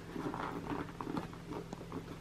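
Fingers working at the lid flaps of a cardboard box: faint, irregular scratching and light tapping on the card.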